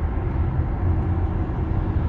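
Steady low road and tyre rumble inside a Tesla's cabin while it cruises at about 60 mph on the highway.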